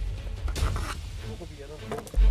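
Background music with a steady low bass, and a man's voice speaking briefly near the end.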